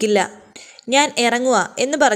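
A woman's voice narrating in Malayalam, with a short pause of about half a second early on.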